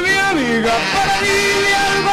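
Recorded live performance of a merengue band playing, with a man's voice singing long held notes over the band and one note sliding down in pitch about half a second in.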